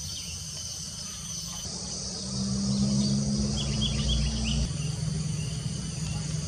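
Steady chorus of insects trilling high and continuously, with a short run of small bird chirps about three and a half seconds in. A low steady hum comes in under it about two seconds in and stops near five seconds.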